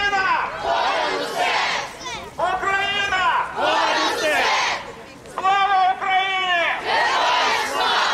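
Crowd of protesters chanting a short slogan in unison, repeated in a steady rhythm about every second and a half.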